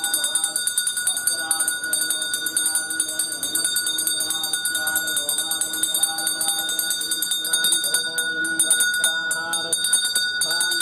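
Brass puja hand bell rung rapidly and without a break, its steady bright ringing tones over people's voices, which grow louder near the end.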